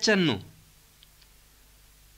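A voice speaking Burji ends a phrase with falling pitch, followed by a pause of near silence broken by a couple of faint clicks.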